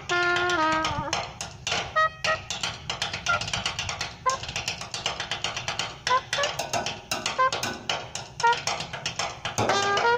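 A drum break on an empty steel oil drum, struck with two sticks in fast, uneven hits. A pocket trumpet plays the tune for about the first second, drops out, and comes back in just before the end.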